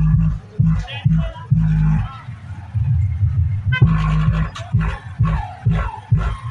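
Bass-heavy DJ music played through a truck-mounted speaker stack, with loud deep bass hits in a stop-start rhythm and a vocal line over them.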